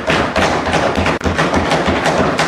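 Many hands banging on desks in a dense, irregular clatter of knocks, several each second: legislators thumping their desks in approval of a point.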